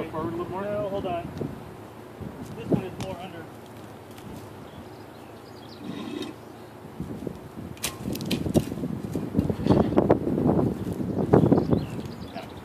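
Rocks and boards being shifted by hand on rough ground: a few sharp knocks about eight seconds in, then busy scraping and clattering, with brief indistinct talk at the start.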